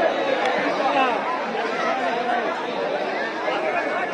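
Crowd chatter: many people talking at once in a large audience, a steady babble of overlapping voices.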